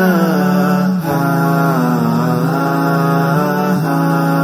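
Slow, melodic vocal chant with long held notes that glide down and back up, over a steady low drone.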